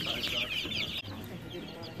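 A tub of baby chicks peeping: many short, high, overlapping chirps, dense at first and thinning out about halfway through.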